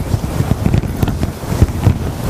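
Microphone handling noise: a loud, low rumbling with irregular crackles as the microphone is rubbed and knocked while things are moved at the podium.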